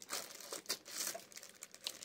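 A thin plastic bag crinkling faintly in small, scattered crackles as a screw-on jar lid is twisted down over it.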